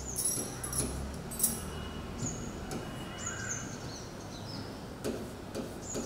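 Pen working on an interactive display as an arrow is drawn: a few soft taps and clicks over quiet room tone, with a few short, high chirps scattered through.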